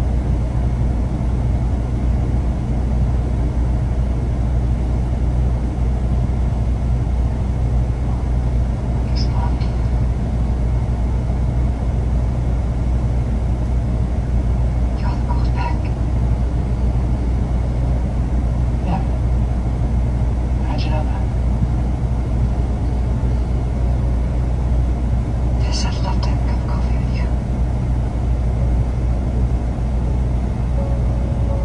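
Steady low drone of an idling semi-truck engine, heard inside the cab. Faint snatches of film dialogue from a TV break in now and then.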